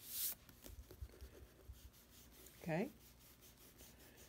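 Graphite pencil scratching over sketchbook paper in short drawing strokes, faint. There is a brief, louder scrape at the very start.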